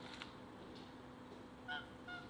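Goose honking twice near the end, two short calls a fraction of a second apart.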